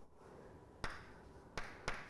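Chalk tapping against a chalkboard while writing, three short sharp taps, the first about a second in and the last two close together near the end.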